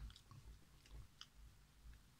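Faint mouth sounds from tasting a gulp of fizzy drink: small lip and tongue clicks and swallowing, a few faint clicks near the start and about a second in, with otherwise near silence.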